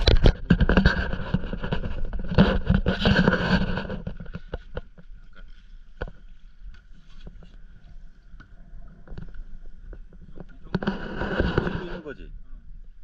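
Stand-up paddleboard paddle strokes and water splashing and lapping at the board. Loud noisy rushes fill the first four seconds and return near the end, with a few sharp clicks in the quieter stretch between.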